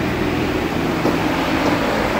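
A steady machine hum under a constant rushing noise, like a running fan or blower, with no change through the two seconds.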